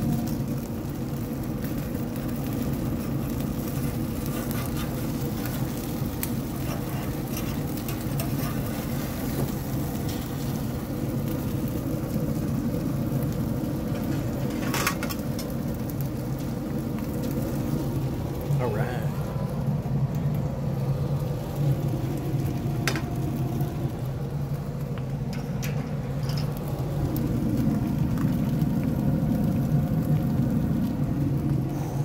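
Pellet smoker running with a steady hum, with a few sharp clinks of a metal spatula against the grill grate as the meat is lifted off.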